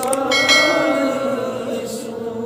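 Male voice holding a long chanted note of a naat recitation. A bell-like chime sounds about half a second in and rings away over about a second.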